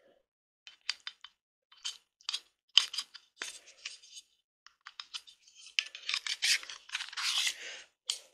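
Small plastic clicks and scraping from a tool-free M.2 NVMe SSD enclosure being closed and handled. Scattered clicks at first, then a longer stretch of scraping and rubbing near the end as the enclosure is slid into its rubber sleeve.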